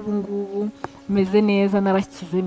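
A woman speaking in long, level-pitched phrases close to the microphone, with a short pause just before the middle and a faint steady hum underneath.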